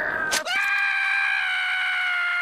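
Cartoon saber-toothed squirrel (Scrat) letting out one long, held scream that starts about half a second in, after a brief noisy sound.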